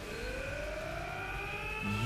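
A sustained tone with several higher overtones, rising slowly and steadily in pitch over a steady hiss, from the anime episode's soundtrack.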